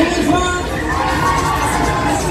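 Riders on a spinning Huss Break Dance fairground ride shouting and screaming together, many overlapping voices over a steady din.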